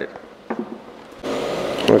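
A few faint clicks in the first second, then a steady mechanical whirring hiss that starts abruptly a little past the middle and cuts off just before the end.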